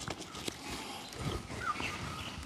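A few irregular knocks and handling sounds as a kitul palm flower stalk is worked on by hand high up the tree. A short chirp, most likely a bird, comes near the end.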